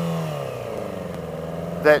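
Yamaha R6 inline-four sport-bike engine idling steadily while stopped, heard from the rider's helmet microphone; a spoken word near the end.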